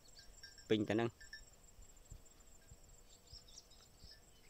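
Faint insect chirping in short repeated high-pitched pulses, with a brief spoken word about a second in.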